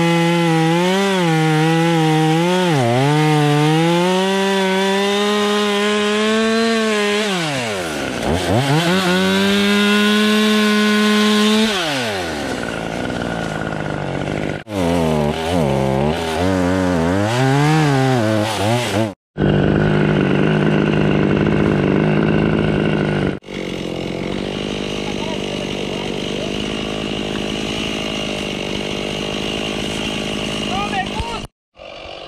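Two-stroke gas chainsaw cutting through a fallen tree trunk, its engine pitch wavering and sagging under load, dropping off and revving back up about a quarter of the way in. After two abrupt breaks past the middle, the saw runs at a steadier, even pitch.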